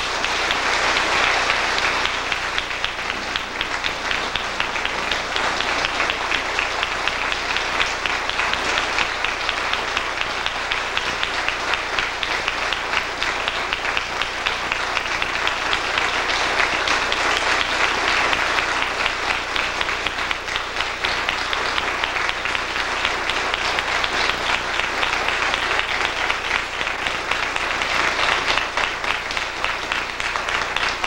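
Large crowd applauding, many hands clapping in a steady, sustained ovation.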